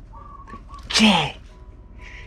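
A man's single short, loud shouted exclamation about a second in, its pitch falling and breathy. Faint steady tones sound underneath.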